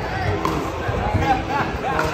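Background chatter: several people talking at once, a steady babble of voices.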